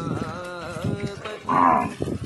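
Sanskrit verses chanted in a wavering melodic voice, cut across about one and a half seconds in by a loud, short call from one of the cattle, a brief low.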